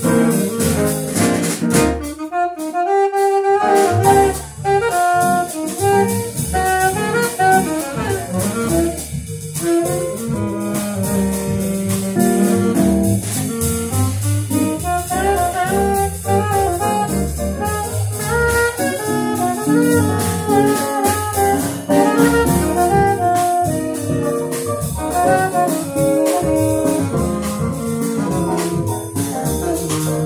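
Small jazz combo playing live: saxophone carrying the lead line over grand piano, archtop electric guitar, upright bass and drum kit. The bass and drums drop out briefly about two seconds in, then the full band comes back in.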